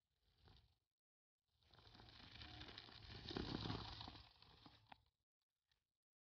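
A Nanrobot Lightning electric scooter's rear tyre skidding and scrubbing over loose dirt during a rear-wheel power slide. The gritty scraping builds from about a second and a half in, is loudest about halfway through, and cuts off suddenly just after five seconds.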